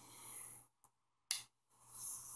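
A single short, sharp click about a second and a half in: a switch on a Bird 4431 wattmeter with a PEP kit being flipped on, lighting the kit's blue LED. A faint breath comes just before it.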